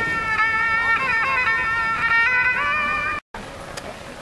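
Erhu (Chinese two-string fiddle) playing a bowed melody that slides between notes. It cuts off abruptly about three seconds in, leaving quieter outdoor background noise.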